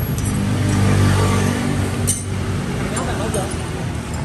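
A steady engine drone from a running motor vehicle, with a faint clink or two of metal. A brief spoken 'ừ' comes near the end.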